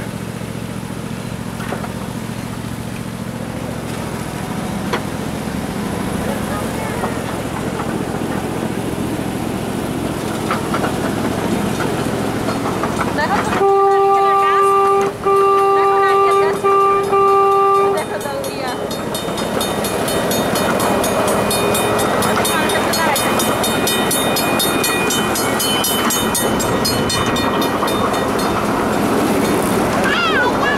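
Miniature ride-on train running along its track with a steady rumble and rail noise. About halfway through its horn sounds four blasts, long, long, short, long, the standard signal for a grade crossing, as the train approaches a road crossing.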